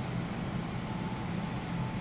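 Steady low hum of indoor air conditioning or ventilation in a shop, even throughout, with a faint thin tone above it.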